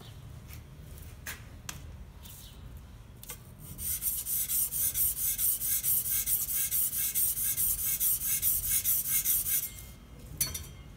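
Steel spatula (putty-knife) blade rubbed back and forth on sandpaper to sharpen and polish its edge. Quick, even scraping strokes, about five a second, start about four seconds in and stop just before the end, after a few light clicks of handling.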